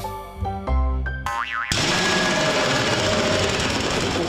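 Cartoon sound effects: a second or so of short music notes, then a quick rising-and-falling boing, then a loud, steady noisy sound effect from under two seconds in as the character goes over the edge of the plank.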